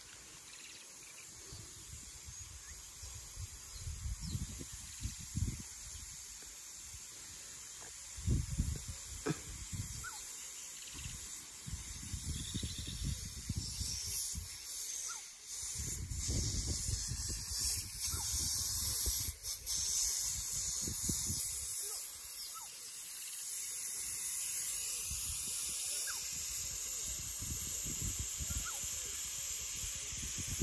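Steady hiss of water spraying from sprinkler irrigation jets, with wind gusting on the microphone in uneven low rumbles.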